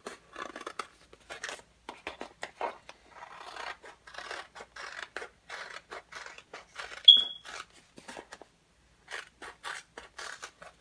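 Scissors cutting, in a run of short snips. About seven seconds in comes a single short, high beep: a smoke detector's low-battery chirp.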